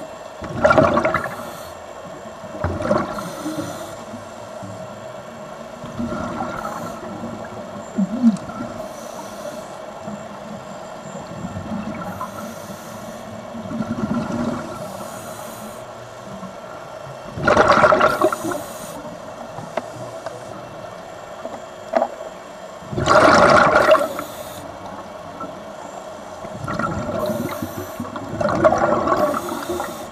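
A scuba diver's breathing through the regulator, heard underwater: bursts of exhaled bubbles rushing out, each lasting a second or so and coming every few seconds, with the two loudest in the second half. A faint steady hum lies beneath.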